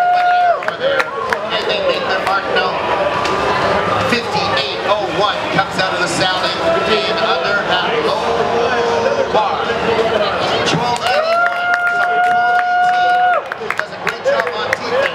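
Arena crowd noise: many indistinct voices shouting and cheering together. A long held note sounds for about two seconds near the end, and another ends just after the start.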